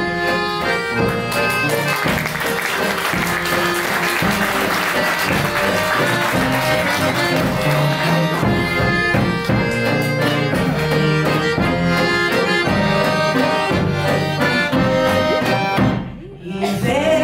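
Accordion playing an instrumental interlude between sung verses of a Macedonian folk song, backed by acoustic guitar and a tapan drum beating a regular rhythm.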